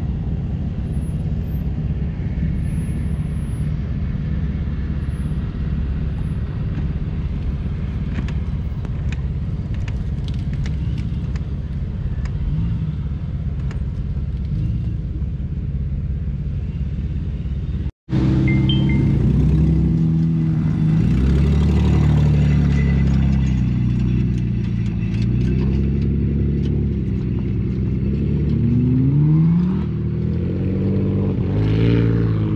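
Jeep Wrangler engine running low and steady as it crawls through a dirt ditch, under a low rumble. After a sudden break about halfway, a vehicle engine runs louder with a clearer pitch, revving up in rising sweeps near the end.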